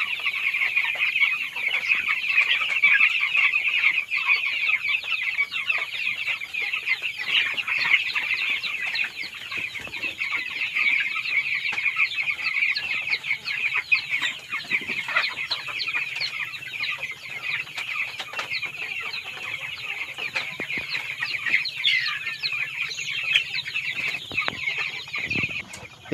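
A flock of young broiler chickens peeping continuously, many high-pitched calls overlapping.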